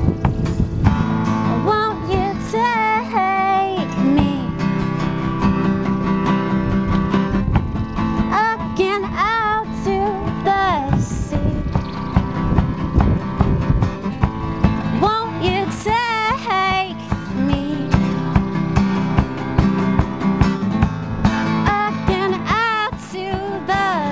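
Live band music: guitars over a steady drum beat, with a voice singing long wavering phrases that carry vibrato.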